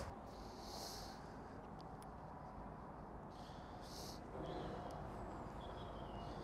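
Faint outdoor background: a steady low rumble with a few brief, faint high-pitched chirps and one small click about two seconds in.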